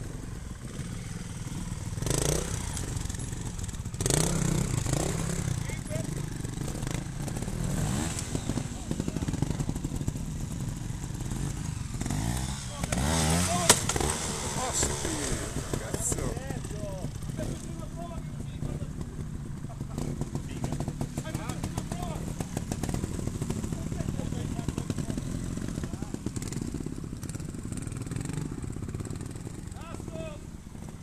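Trials motorcycle engine running and blipping in short bursts as the rider hops the bike up onto a large rock, with several sharp knocks of the tyres and frame striking the rock, the loudest about fourteen seconds in.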